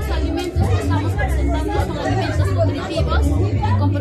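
Background music with a heavy, repeating bass beat under people talking and chatter.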